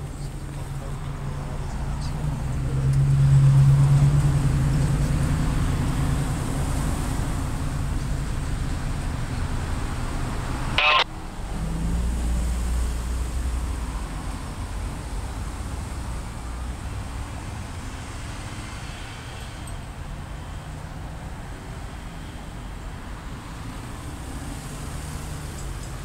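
Engine rumble over steady traffic noise, swelling to its loudest about three to four seconds in and then fading. A brief sharp sound cuts in just before the middle, followed by a deeper rumble for a few seconds.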